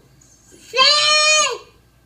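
A toddler's single long, loud yell, a held high-pitched "aaah" lasting about a second.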